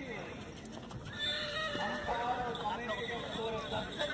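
A horse whinnying from about a second in, over a crowd's voices, with hooves stepping on a sand arena.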